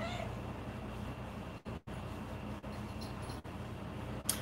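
A domestic cat purring steadily close to the microphone, a low, rapidly pulsing rumble.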